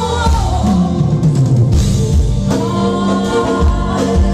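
A live band with keyboard, bass guitar and drum kit playing a pop ballad while a female lead singer sings into a microphone, holding long notes in the second half.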